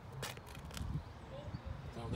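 Footsteps on tarmac: a few short clicks over a low rumble, with a faint voice in the background.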